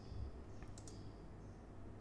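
A few faint computer mouse clicks over a low, steady hum.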